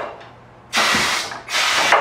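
Two short bursts of compressed-air hiss, about half a second each, from the pneumatic helper arm of a Corghi A9824 leverless tire changer. The arm's valve is being worked to press the tire's top bead down into the wheel's drop center.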